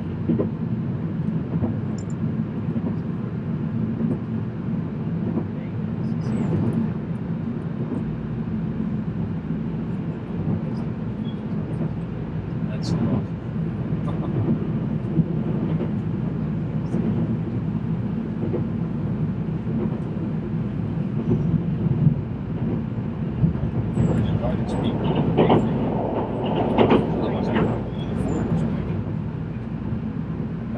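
Inside a moving train carriage: the steady low rumble of the train running along the rails, with scattered clicks and knocks that grow busier near the end.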